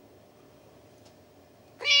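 Quiet room tone, then a cat's meow begins near the end: one drawn-out, high call.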